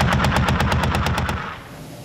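Machine gun firing one long rapid burst, about ten shots a second, that stops about one and a half seconds in.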